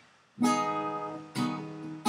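Acoustic guitar strummed twice, about a second apart, starting after a brief near-quiet moment; each chord rings on.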